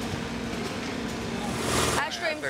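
Steady engine hum with street noise, swelling into a louder rush of noise about one and a half seconds in.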